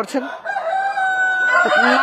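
Tiger chicken rooster crowing in a poultry shed: a long drawn-out crow starts about half a second in, and another begins near the end.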